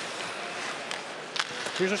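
Steady hockey arena crowd noise, with two sharp clacks of sticks striking the puck, about a second in and about half a second later.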